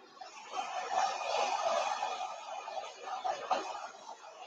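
Small handheld hair dryer blowing air onto wet chalk paste on a silk screen to dry it, a steady rush that swells about half a second in and eases toward the end.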